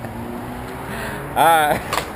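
Car engine idling with a steady low hum. About one and a half seconds in, a person lets out a short, wavering vocal sound, the loudest thing heard.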